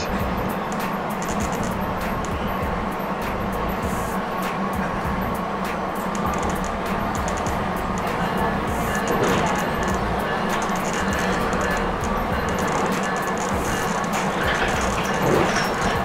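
Interior of an electric multiple-unit commuter rail car running at speed: a steady rumble of wheels on track with a constant electric drive hum and faint clicks.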